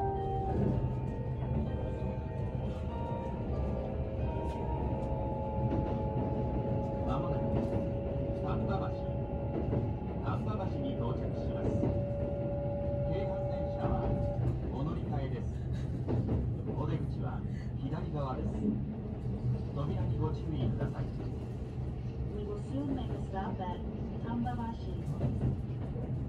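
Steady running rumble inside a Kintetsu 22600 series Ace limited express car. A couple of held tones carry through the first half, and from about seven seconds in an automated next-station announcement plays over the car's speakers.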